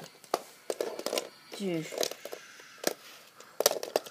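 Plastic Lego bricks clicking and knocking as they are handled, a handful of sharp separate clicks, with two brief wordless vocal sounds from the boy about one and two seconds in.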